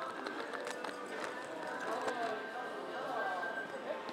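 Indistinct background voices over steady room noise, with light scattered clicks.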